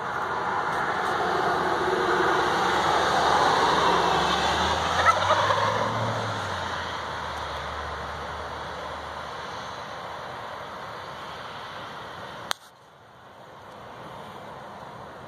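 A male wild turkey gobbling once, briefly, about five seconds in, over a rushing background noise that swells and then fades. A single sharp click comes near the end, after which the background is quieter.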